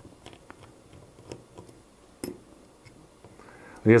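Faint, irregular ticks and clicks of a small screwdriver turning out the screws that hold the circuit board in an H0 model locomotive's plastic chassis, with one louder click a little past halfway.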